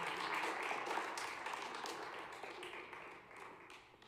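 Audience applause dying away: the clapping thins to a few scattered claps and fades out near the end.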